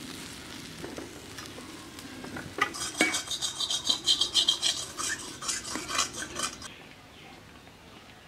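Metal spatula stirring and scraping a thick lentil filling against the side of a metal karahi. The strokes are quiet at first, then come fast and loud from about two and a half seconds in to near seven seconds, before easing off again.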